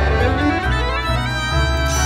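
Violin playing sustained notes in a slow melody, over a steady low bass accompaniment.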